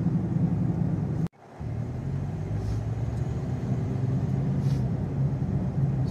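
Steady low hum of a car's engine and tyres on a wet road, heard from inside the cabin. The sound drops out briefly about a second in.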